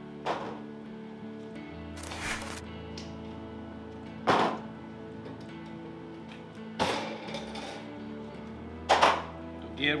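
About five sharp thunks a couple of seconds apart over background music: a stainless steel mixing bowl and the pellet smoker being handled as sauced wings go back on the grill.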